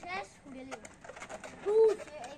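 Children's voices and calls, with one short, loud, rising-and-falling call near the end.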